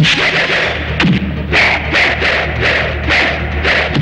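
Film fight-scene soundtrack: background score with a heavy thud about a second in, then a quick, even run of sharp hit sound effects, about two a second.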